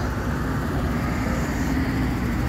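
Low, steady rumble of a vehicle engine running close by.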